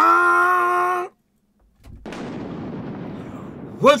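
A held sung note from an intro song ends about a second in. After a short silence, an explosion sound effect follows: a low rumble that breaks into a blast and dies away slowly.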